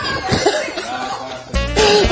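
Voice sounds with laughter and coughing, then background music with a steady, bass-heavy beat cuts in near the end.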